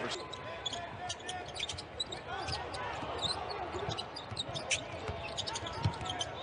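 Court sound of a basketball game: a ball dribbling on the hardwood floor and sneakers squeaking, with a heavier thud of the ball just before the end.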